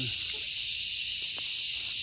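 A steady high-pitched hiss over an outdoor field, with one faint click past the middle.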